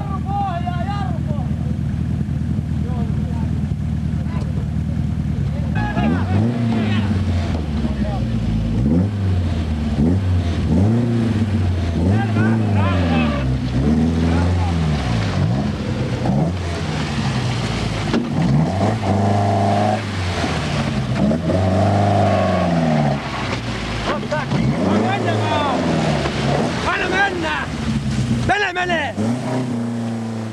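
Rally car engine running steadily at first, then revved in repeated throttle blips from about six seconds in, each one rising and falling in pitch over roughly a second.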